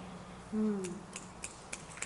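A brief falling vocal sound from a person, then a steady run of sharp clicks, about three a second.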